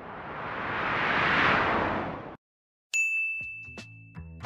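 Editing sound effects: a whoosh that swells and fades over about two seconds and cuts off suddenly. After a short silence comes a single bright ding that rings on steadily, a map-pin drop sound.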